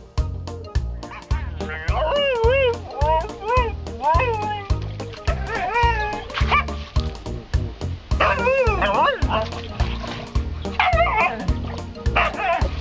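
Background music with a steady beat, over which a Siberian husky vocalizes in several wavering, howl-like whining calls between about two and eleven seconds in.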